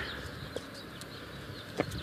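Faint outdoor background noise in a pause between words, with a short click near the end.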